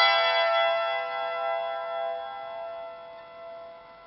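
Hammered dulcimer strings ringing on after the last notes of a phrase, several metallic tones fading slowly away over about four seconds with no new strikes.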